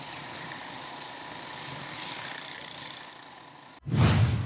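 Street traffic noise: motorcycles and other vehicles running on a busy road, heard as a steady wash of engine and road noise. It cuts off abruptly just before the end, and the loud start of a music sting follows at once.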